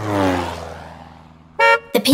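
A falling tone that fades away over about a second and a half, then one short toot of a cartoon bus horn sound effect near the end.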